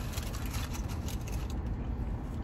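Steady low hum of a car idling, heard from inside the cabin, with faint light ticks and rustles of food and packaging being handled.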